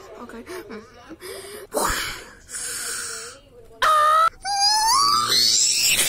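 Cartoon characters' voices from a TV, then a loud, high-pitched wailing cry about four seconds in, followed by further wavering cries that rise in pitch.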